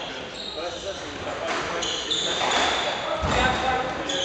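Squash court sounds between rallies: a squash ball bouncing a few times and short, high squeaks of court shoes on the wooden floor, ringing in a large hall.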